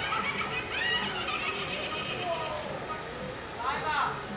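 Clown Halloween animatronic playing its recorded voice track: a voice talking and laughing, with a louder burst near the end.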